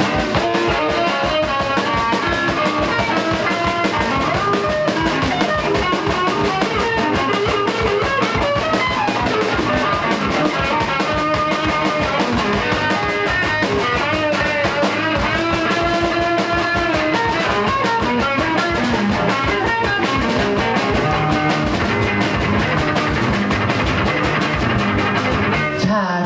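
Live rock band playing an instrumental passage: electric guitar lines over electric bass and a drum kit keeping a steady beat, loud and continuous throughout.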